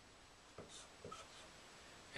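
Dry-erase marker writing a letter on a whiteboard: a few faint strokes from about half a second to a second in.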